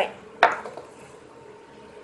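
A glass tumbler set down on a wooden tabletop: one short clack about half a second in.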